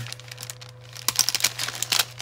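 Clear plastic sticker packaging crinkling and crackling as it is handled and leafed through. The crackles are sparse at first and come thick and fast in the second half.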